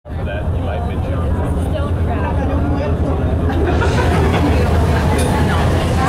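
Boat engine running with a steady low drone, under the chatter of several people.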